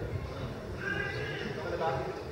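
Indistinct chatter of several people talking in a hall, with a short, high-pitched voice about a second in and another near the end.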